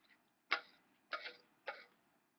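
A spoon clicking against a plate while eating beans: three short, sharp clicks about half a second apart.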